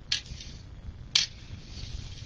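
Two short, crisp clicks about a second apart as a poly burlap strip is handled and folded.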